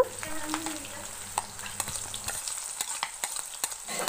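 Sliced onion and green chillies sizzling as they fry in hot oil in a metal kadai, stirred with a spatula that scrapes and clicks against the pan.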